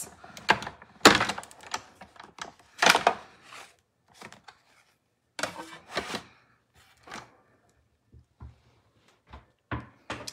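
Hand-cranked die-cutting and embossing machine (Stampin' Cut & Emboss Machine) running a stack of cutting plates and a 3D embossing folder with cardstock through its rollers: a string of irregular clunks and knocks from the plates and the turning handle. It ends with a few lighter clicks as the plates come free.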